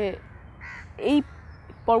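A crow cawing briefly in a pause between speech.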